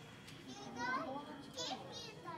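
Children's voices in a visitor hall: chatter with two high, excited calls, one about a second in and one near the end.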